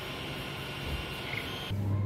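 3D printer running mid-print, a steady whirring hiss of its fans and motors with faint steady tones. It cuts off abruptly near the end, leaving a low hum.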